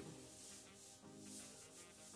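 Faint background music with soft rubbing of a faux leather dress as the wearer turns, a light rustle that is there but not loud.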